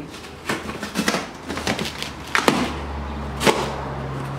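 A cardboard box being handled and its packing tape picked at and pulled open: a string of short scrapes and crackles, over a low steady hum.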